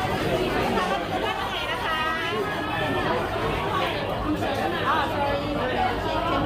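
Chatter of many diners talking at once in a busy restaurant dining room, a steady babble of overlapping voices with no single speaker standing out.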